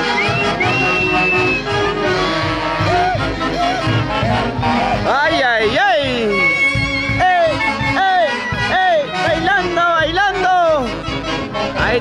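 Live festival band music: a brisk dance tune played by a brass band, its melody lines bending and swooping from about five seconds in.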